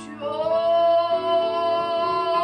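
A boy singing one long held note over backing music, starting about a quarter second in.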